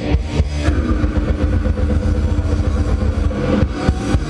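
Loud live heavy metal music from a band: distorted electric guitars and drums, steady and dense.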